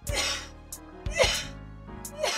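A woman retching: two harsh heaves, the second about a second after the first and louder, over background film music.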